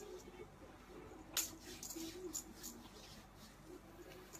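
Hands slapping and rubbing cream onto bare skin: one sharp slap about a second and a half in, then several fainter clicks over the next second or so.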